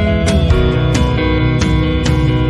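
Instrumental background music with steady sustained notes, the harmony changing about half a second in.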